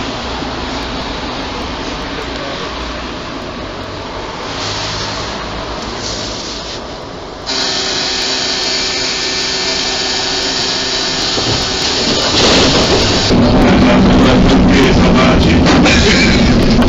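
Tram running, heard from inside the passenger car. About seven and a half seconds in, music starts suddenly and gets louder near the end.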